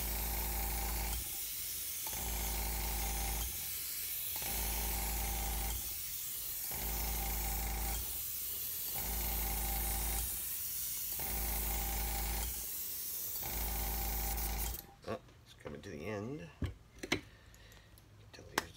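Airbrush and its compressor spraying paint at about 40 PSI: a steady hiss over a hum, coming and going in regular pulses about every two seconds. The sound cuts off suddenly about fifteen seconds in, followed by light metal clicks and clinks as the airbrush is handled.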